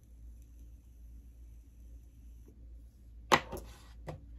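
A vape being puffed. For about two and a half seconds the device gives a faint, steady, high-pitched whine while it is drawn on, and about three seconds in there is a sudden loud breath out as the vapor is exhaled.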